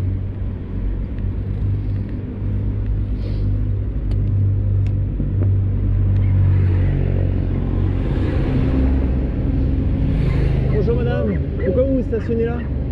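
Steady low rumble of city road traffic around a stopped bicycle, with a motor vehicle swelling past between about 7 and 11 seconds in. A voice starts about a second before the end.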